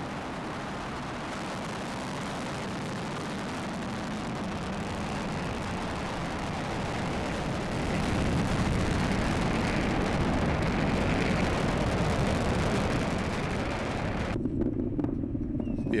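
SpaceX Falcon 9 rocket's nine Merlin engines at liftoff, heard from a distance as a steady, rough rumble of rocket exhaust. It grows louder about halfway through and stops abruptly a couple of seconds before the end.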